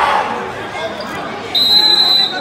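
Crowd chatter and voices in a gymnasium, then, about one and a half seconds in, a loud steady high-pitched whistle blast.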